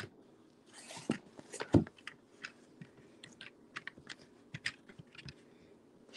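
Faint handling noise of a camera being repositioned higher by hand: scattered small clicks, taps and knocks, with one louder knock a little under two seconds in.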